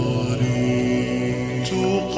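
Arabic nasheed soundtrack: a singing voice holding a long, steady note in a chant-like style, moving to a new pitch near the end.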